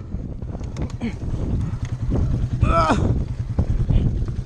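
Honda dirt bike engine idling, a steady low rumble mixed with wind on the microphone. About three seconds in, a person gives one short exclamation that rises and falls in pitch.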